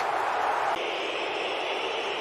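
Football stadium crowd noise, a steady din of many voices, changing in tone a little under a second in.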